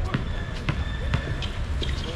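A basketball being dribbled on an outdoor hard court, three bounces about half a second apart, over a steady low rumble.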